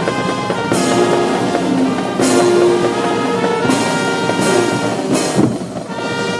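Brass band playing a march, with a cymbal crash about every second and a half.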